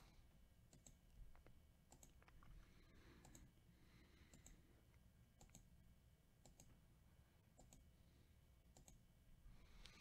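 Faint computer mouse clicks, about a dozen short, scattered clicks in near silence.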